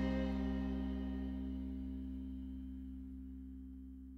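The final chord of an alt-country band, led by guitar, ringing out and dying away steadily with no new notes played.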